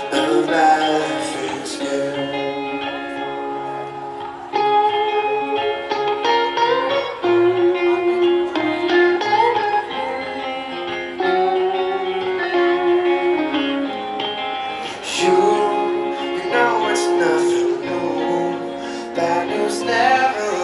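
Live band playing a slow, guitar-led song, recorded from far back in the concert audience.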